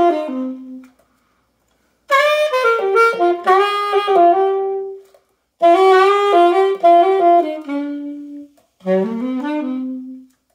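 Yamaha YAS-52 alto saxophone played solo: short melodic phrases of several notes each, separated by pauses of about a second.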